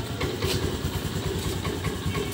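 An engine idling, a steady low pulsing.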